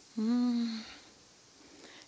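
A woman's short hummed "mmm", held on one steady pitch for well under a second near the start, followed by quiet.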